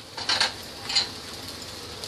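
Spiced tomato-onion masala frying quietly in a steel kadai, with two short clinks of dishware about half a second and one second in.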